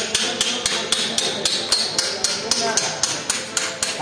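A hammer rapidly tapping metal on a motorcycle frame, about four even strikes a second.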